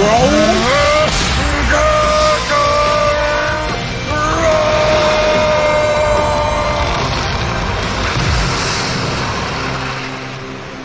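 Anime battle soundtrack of the fan film: music and rumbling fight effects, with a high-pitched sound that rises sharply over the first second and is then held, with short breaks, until about seven seconds in.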